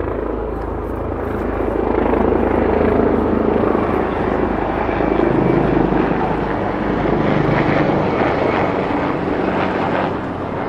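Helicopter flying overhead, its rotor and engine loud and steady, swelling about two seconds in and easing off near the end.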